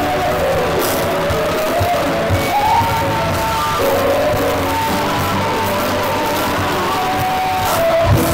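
Live gospel worship music: singers and a choir singing held lines over a band with a drum kit and bass guitar.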